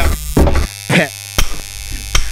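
A man saying 'yeah' and laughing into a corded handheld microphone, in short bursts, over a steady low electrical hum; a sharp click comes near the end.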